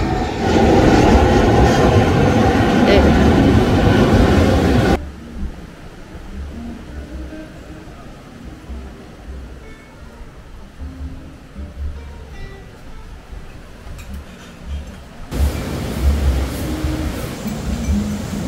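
Jet airliner flying low overhead, loud for the first five seconds and then cut off abruptly. A quieter stretch with a low rumble follows, and loud, even noise comes back near the end.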